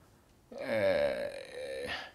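A man's long, hesitant vocal 'æh', a filler sound while he gathers his words. It starts about half a second in and lasts about a second and a half.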